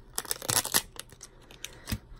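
A protective sheet being peeled off the mirror inside an eyeshadow palette's plastic case: a dense run of crackles in the first second, then a few scattered clicks and a sharper click near the end.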